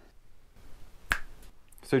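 A single sharp finger snap about halfway through, over quiet room tone.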